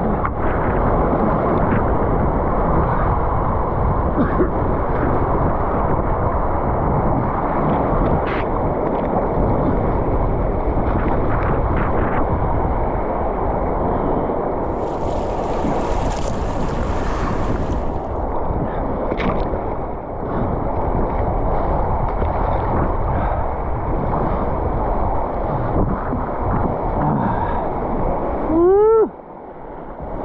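River whitewater rushing and churning right at the microphone, with splashing as the camera rides at water level through the rapid. Near the end comes a brief pitched sound that rises and falls.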